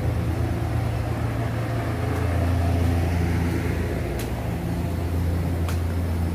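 Steady low machine hum of workshop equipment, with a few faint clicks about four seconds in and near the end.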